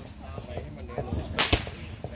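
Ground fountain firework going off, with a few small pops and crackles and then one sharp, loud crack about one and a half seconds in.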